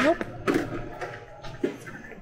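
A woman's voice saying "nope", followed by two short sharp sounds about half a second and a second and a half in.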